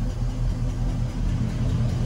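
Chevrolet Caprice Brougham's engine idling steadily with a low, even rumble.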